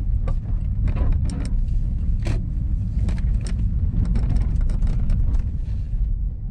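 A car's low engine and road rumble heard inside the cabin as it turns slowly into a car park and comes to a stop, with scattered light clicks and knocks.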